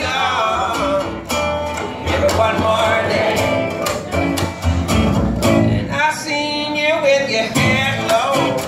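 Live acoustic folk-blues band playing: men's voices singing together over strummed acoustic guitar and plucked upright bass.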